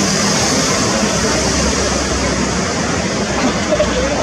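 Steady street traffic noise, with a low rumble that swells through the middle.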